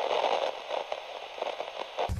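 Crackling TV-static sound effect: a flickering hiss that cuts off suddenly at the end.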